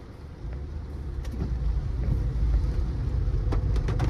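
Low rumble of a car heard from inside the cabin, coming up about half a second in and growing steadily louder, with a few faint clicks.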